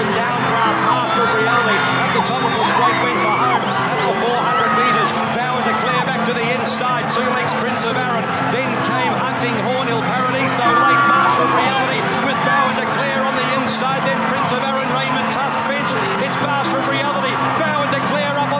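A racecourse crowd shouting and cheering during a horse race, many voices at once, with background music playing steadily underneath.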